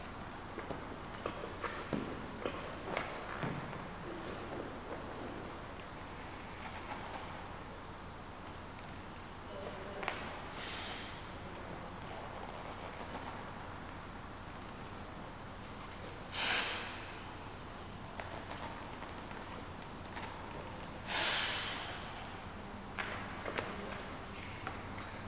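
A man's sharp, forceful exhalations under exertion during band-resisted barbell rollouts: three short rushes of breath several seconds apart, the last two the loudest. A few light knocks in the first few seconds.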